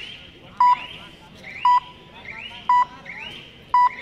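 Electronic raid timer beeping: short, loud, high beeps about once a second, four in all, the kind of warning a kabaddi raid clock gives as a raid runs out.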